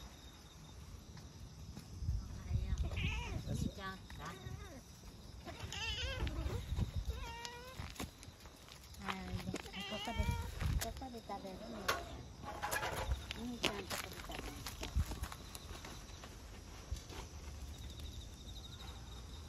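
Street cat meowing repeatedly in short, wavering calls, mixed with a few sharp clicks and low handling rumble.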